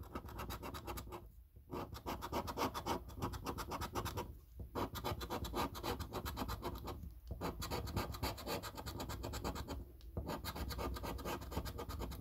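A coin scraping the latex coating off a Monopoly Deluxe scratch card in quick back-and-forth strokes. The scratching comes in bursts broken by brief pauses about every three seconds.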